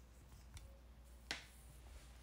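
Near silence over a faint steady low hum, broken a little past halfway by one short, sharp click.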